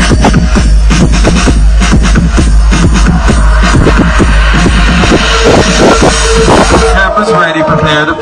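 Loud electronic dance music over a large concert sound system, with a heavy bass line and a steady kick-drum beat. About seven seconds in the deep bass drops out for a short break with a sweeping tone.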